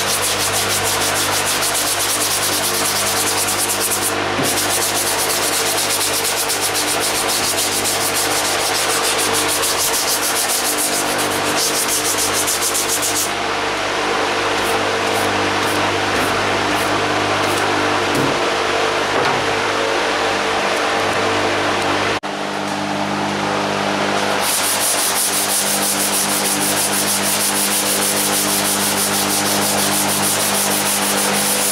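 Body filler on a steel car hood being hand-sanded with a sanding block and 180-grit paper: steady back-and-forth rubbing and scraping strokes. A shop fan hums underneath, and there is a short break about two-thirds of the way through.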